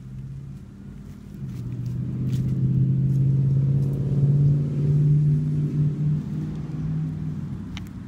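A motor vehicle's engine droning steadily, growing louder from about a second and a half in and fading away near the end, as a vehicle passes by.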